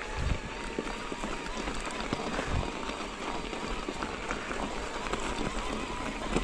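Mountain bike rolling over a rocky dirt and snow trail: tyre crunch and frame and chain rattle over a steady rough noise, with a thump from a bump just after the start and another about two and a half seconds in. A faint wavering whine runs under it.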